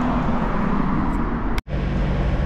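Street traffic: a car passing and steady city road noise, with a low hum underneath. About one and a half seconds in, the sound cuts out for a split second and comes back as a steadier hum.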